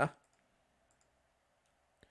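Several faint, scattered computer mouse clicks after the tail end of a spoken word.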